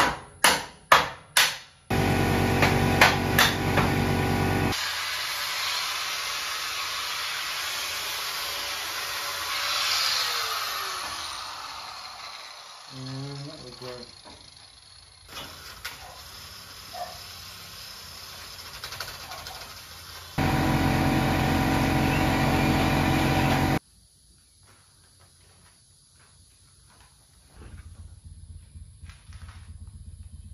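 A mallet knocks a steel cross member into a truck frame, four quick blows. Then a loud power tool runs twice, for a few seconds each time, with a stretch of hiss between.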